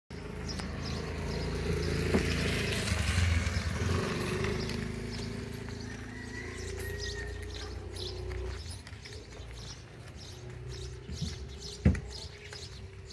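A motor vehicle's engine running close by, loudest about three to four seconds in and fading away by about nine seconds, with birds chirping over it. A single sharp knock comes just before the end.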